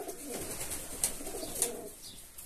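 Domestic fantail pigeons cooing in a small aviary, with two short clicks about a second and a second and a half in.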